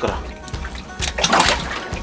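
A live red sea bream splashing in the water of a boat's live well as it is released from the pliers. There are two splashes, one at the start and one around the middle.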